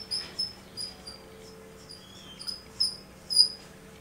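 Felt-tip marker squeaking on a whiteboard as words are written: a string of short, high squeaks at irregular intervals, the loudest few near the end.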